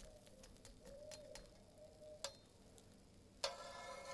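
Quiet handling of a crepe on an electric crepe maker's plate with a metal spatula: a click a little past two seconds in and a sharper metallic click about three and a half seconds in that rings briefly, over a faint wavering tone.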